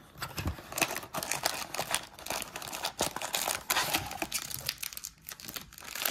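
Wrappers of trading card packs crinkling as the packs are pulled out of a cardboard blaster box, with the cardboard flap rustling. Irregular crackles throughout, easing briefly about five seconds in.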